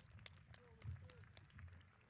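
Faint, scattered handclaps from a few people, irregular single claps over a low steady rumble.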